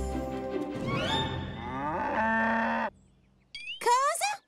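Cartoon cows mooing: several overlapping moos falling in pitch, then one held steady moo that cuts off suddenly about three seconds in. A brief rising sound follows near the end.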